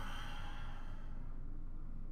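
A person's sigh: one breathy exhale of about a second that fades out, over a steady low room hum.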